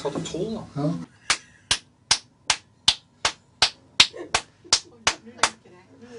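One man clapping his hands twelve times at a steady pace, about two and a half claps a second, counting out the twelfth floor for a clap-operated elevator.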